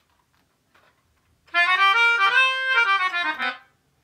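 Melodica, blown through its mouthpiece tube, playing a short phrase of sustained chords that starts about a second and a half in and stops after about two seconds.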